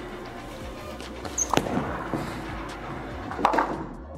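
A bowling ball lands on the lane with a single sharp thud about a second and a half in, then rolls, with a short clatter near the end as it reaches the pins. Background music plays throughout.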